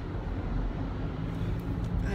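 Steady road and engine noise inside a car's cabin while driving at highway speed.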